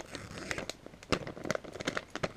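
Plastic soft-bait bag crinkling and crackling in the hands as it is handled and pulled open: a run of irregular small crackles.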